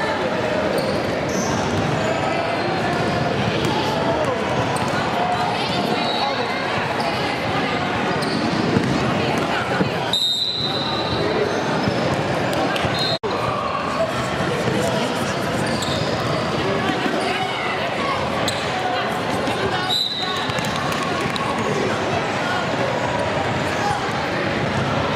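A basketball bouncing on a hardwood gym court during play, among the shouting voices of players and spectators in the gym.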